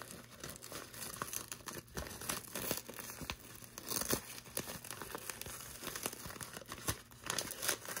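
A doll's shiny garment bag crinkling and rustling as it is handled and unfolded: a steady run of small irregular crackles.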